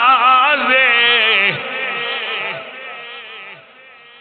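A man's unaccompanied voice chanting a devotional Islamic line on long, wavering held notes, fading away through the second half.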